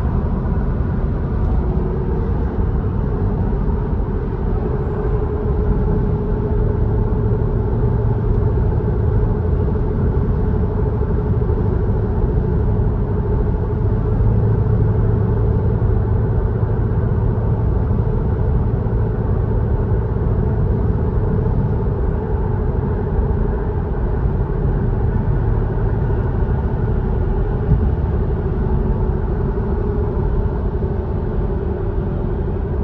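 Steady engine and road noise heard inside a car's cabin at a highway cruise, about 60 mph at about 2,000 rpm, with a low drone that holds even throughout and no gear changes.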